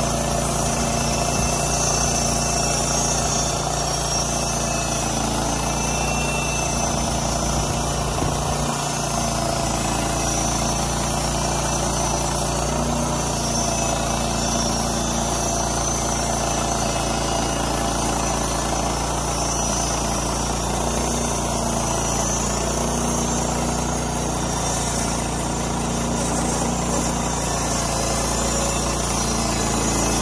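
Timber North portable bandsaw mill's engine running steadily as the band blade cuts boards from a squared log.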